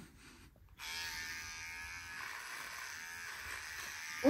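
Electric beard trimmer switched on about a second in, then buzzing steadily as it is held to a man's beard.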